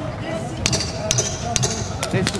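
Several sharp knocks with a metallic ring, about half a second apart, over crowd noise: the ten-second warning being struck near the end of an MMA round.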